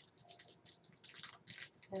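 Blind-pack toy packaging being handled and opened by hand: a run of small crinkles and clicks.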